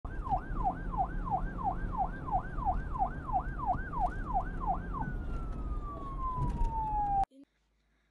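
A siren sweeping rapidly up and down, nearly three times a second, over a background rumble. After about five seconds it changes to one slow falling tone that cuts off suddenly, followed by silence.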